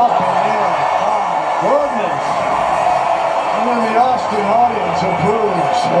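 A man speaking, with steady arena crowd noise underneath.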